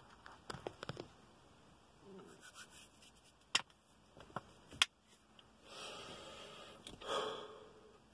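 Faint handling and movement noises of a person settling in a car seat in front of a phone camera: a few sharp clicks, the loudest about three and a half and five seconds in, then a soft breathy rush near the end.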